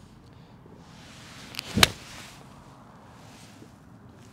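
Six iron striking a golf ball cleanly out of a fairway bunker: a single sharp, crisp strike about two seconds in, just after a lighter tick, followed by a brief hiss of sand. The club takes the ball first and the sand after, a clean ball-first strike.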